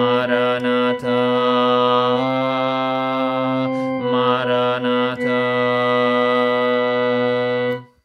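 Sacred choral music: an alto voice holding long notes over sustained organ-like chords, the notes changing every second or two. It ends abruptly just before the end as the piece closes.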